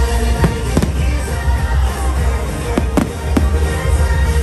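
Fireworks bursting, with several sharp cracks over a continuous deep rumble of booms, heard over loud music.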